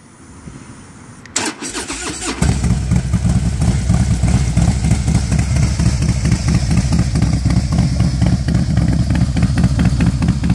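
Harley-Davidson Heritage V-twin, built from a 103 to a 110 with 585 cams and a Vance & Hines Pro 2-into-1 exhaust with race baffle, being started: the starter cranks about a second and a half in, the engine catches about a second later and settles into a loud idle. The engine is only partly warmed up.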